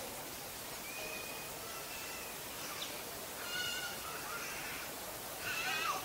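Birds calling over a steady outdoor hiss: short thin whistles, and two louder, harsher calls about three and a half and five and a half seconds in.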